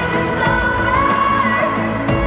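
Live pop song: a singer's voice over a backing band.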